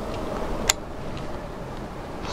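Steady outdoor background noise with a single sharp click about two-thirds of a second in, as a screw is being fitted to a telescope's tube ring.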